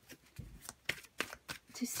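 A tarot deck being shuffled by hand: a quick run of soft card clicks, about three a second.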